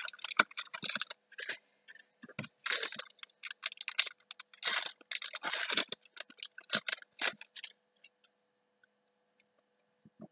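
Foil wrapper of a Yu-Gi-Oh! booster pack crinkling in irregular crackly bursts as it is torn open and crumpled, with the cards inside being handled; it stops shortly before the end.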